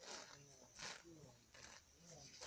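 Faint sounds of a horse grazing close by, with one short crisp tear of grass a little under a second in.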